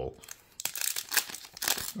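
Foil booster-pack wrapper being torn open and crinkled by hand, a dense run of crackles starting about half a second in.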